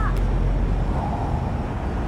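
Steady low rumble of downtown city traffic, deepest in the first half second.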